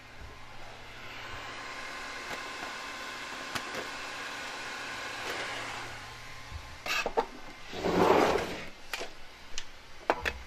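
A faint steady room hum, then a handheld phone camera being handled and moved: a few sharp clicks and knocks about seven seconds in and a loud rustling rush lasting about a second just after.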